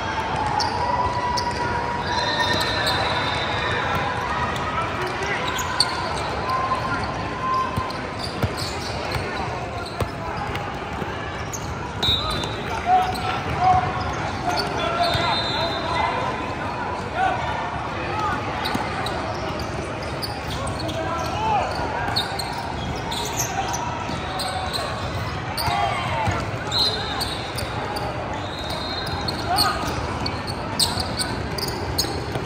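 A basketball bouncing and being dribbled on a hardwood gym floor, over the indistinct chatter of players and spectators in a large, echoing hall. Brief high squeaks come several times, the kind made by sneakers on the court.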